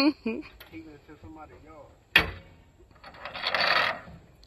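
A truck-mounted dog box door slammed shut once, a single sharp metallic bang with a short ring about two seconds in. About a second of rustling noise follows near the end.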